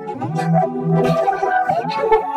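Vocoder-processed soundtrack heard as music: sustained, synth-like chords that change every half second or so, with a rising pitch glide near the end.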